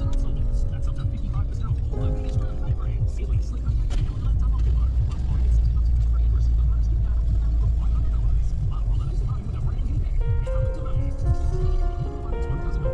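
Low road and engine rumble inside a moving car's cabin, heaviest in the middle few seconds, under background music with held notes that fade out mid-way and come back near the end.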